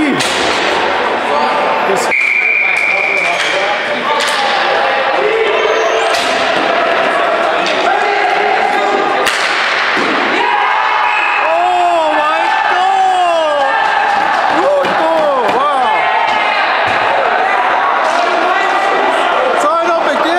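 Ball hockey arena sound: players' voices and shouts echoing in the hall, with repeated knocks and slams of sticks and ball on the floor and boards. A steady high tone sounds for about a second and a half about two seconds in.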